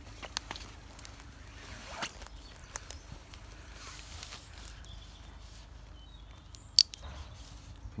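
Soft rustling and scattered light clicks of hands handling sherds of pottery on soil and leaf litter, with one sharp click about seven seconds in.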